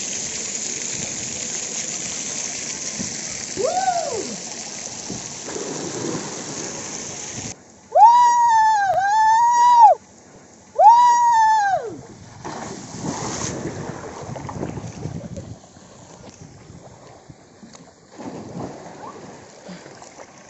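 Water spray pouring down and spattering steadily for the first seven seconds or so, then two long, loud yells from a man on a water slide, followed by quieter splashing in the pool.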